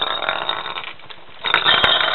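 A lorikeet playing with a plastic ball in a clear plastic bowl on a countertop: two bursts of rough rattling and scraping, the second louder, with a sharp click near the end.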